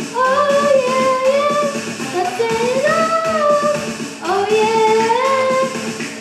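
A girl singing into a handheld microphone over backing music. She sings three long phrases, each sliding up into a held note.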